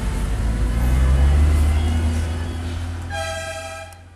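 Low rumble of a car engine and road noise heard from inside a moving car, with a car horn sounding one steady toot of about a second near the end.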